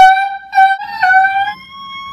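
A man imitating a burglar alarm with his voice: a run of short, held, high wailing notes at much the same pitch with brief gaps between them. Near the end comes a thinner, higher tone.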